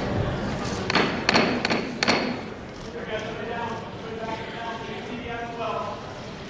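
About five sharp knocks within a second or so, ringing in a large room, followed by faint, indistinct voices.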